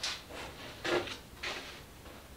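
DeWalt aluminium track-saw track being slid and shifted on a wooden board as it is lined up: a few short scraping slides.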